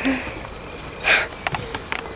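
Small birds chirping, with high, quick downward-sweeping notes near the start and another short one later, over steady outdoor background noise. A short noisy burst about a second in.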